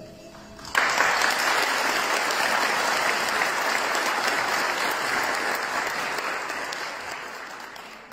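Audience applause in a hall, starting suddenly about a second in, holding steady, then slowly dying away near the end.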